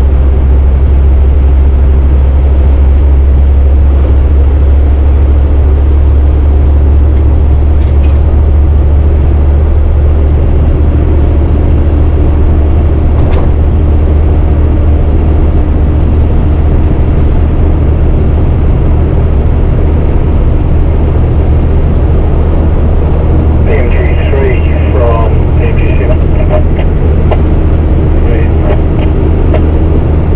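A MAN 4x4 truck's diesel engine running steadily while driving, heard as a loud, even low drone with road noise. Indistinct voices come in near the end.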